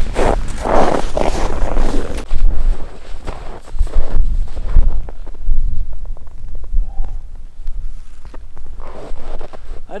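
Footsteps crunching through snow, with wind rumbling on the microphone.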